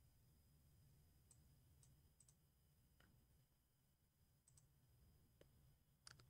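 Near silence: faint room hum with several faint computer mouse clicks scattered through it, some in quick pairs.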